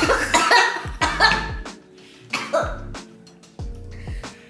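A woman coughing and spluttering in several bursts, most of them in the first second and a half and another short one midway. She has just squeezed a spicy tamarind-chilli candy into her mouth, and it burns her throat.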